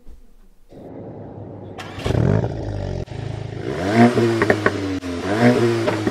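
Mk8 Volkswagen Golf GTI's 2.0-litre turbocharged four-cylinder engine and exhaust, revving up as the car accelerates, its pitch climbing twice in the second half.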